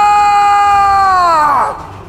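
A single loud, steady, sustained pitched note with many overtones, held without wavering, that bends down in pitch and fades away near the end.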